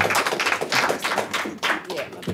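Scattered hand claps from a small audience, thinning out and fading as the applause ends, with some voices underneath.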